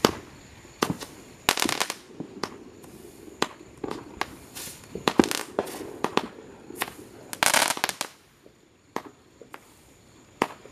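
Fireworks going off: irregular sharp pops and bangs, with short bursts of crackling about a second and a half in, around five seconds and about seven and a half seconds in, thinning out near the end.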